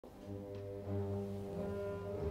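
Orchestral opera music: low sustained chords with brass prominent, the harmony shifting about a second in.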